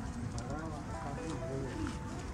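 Indistinct murmur of people's voices over soft background music.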